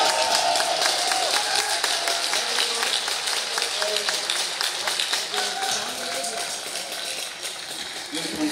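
Audience applauding and cheering, with many hand claps and scattered voices, slowly dying down.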